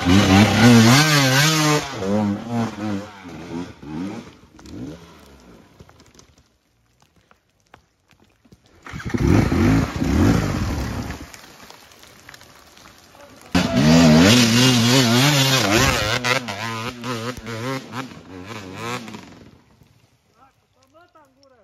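Hard enduro dirt bike engines revving hard in repeated bursts, the pitch rising and falling as they work under load up a steep, root-covered climb. The engine sound comes in three stretches: loud at the start and dying away over a few seconds, a short burst about halfway, then a longer loud revving run near the end. Between them it drops to near silence.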